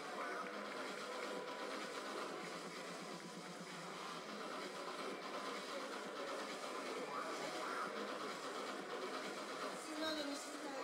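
Steady murmur of a large indoor hall: indistinct crowd voices and room noise, with no distinct events.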